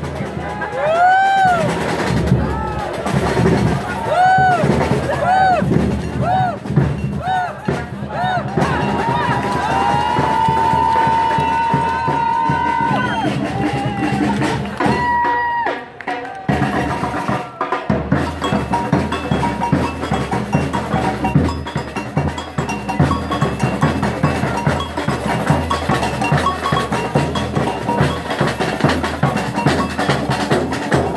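Batucada samba percussion group playing: surdo bass drums and snare drums in a driving, even rhythm that fills in fully from about 18 seconds in. Over the first half, repeated high tones rise and fall about every second and a half, followed by a held tone.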